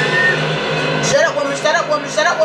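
Television drama soundtrack: a steady music score, joined by a person's voice from about a second in.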